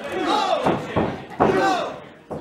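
Loud shouting voices around a pro-wrestling ring, cut by two sharp impacts from the wrestlers, the louder about one and a half seconds in.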